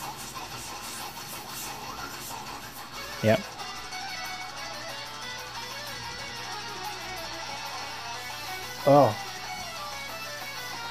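Electric guitar playing technical death metal riffs, heard at low level behind the commentary. Two short, louder voice sounds cut in, one about three seconds in and one near the end.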